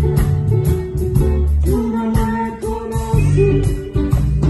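Live band music: guitar playing over steady drum beats, with a large wooden-shelled drum struck with a stick.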